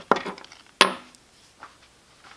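A few light clicks and clinks of small parts and a tool handled on a wooden workbench while a wheel comes off an RC truck. The sharpest is a short metallic clink with a brief high ring, a little under a second in.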